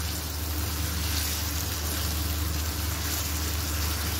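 Chicken pieces sizzling steadily as they fry in oil and masala in a nonstick karahi, at the browning (bhuna) stage where the oil starts to separate. A steady low hum runs underneath.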